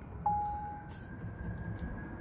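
A steady, clear tone lasting a little over half a second, with a fainter higher tone holding on behind it, over a low background hum.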